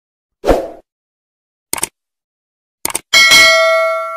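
Subscribe-button animation sound effect: a short thump, then two quick double clicks like a mouse button, then a bell ding that rings on and fades away.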